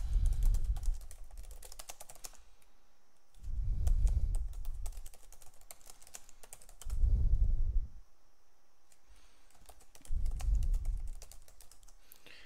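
Computer keyboard typing in quick, irregular keystrokes. It is broken four times by a low rumbling thump about a second long, which is the loudest sound.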